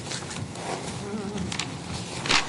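Low room noise in a meeting hall, with a few soft footstep knocks and a faint wavering buzz about a second in.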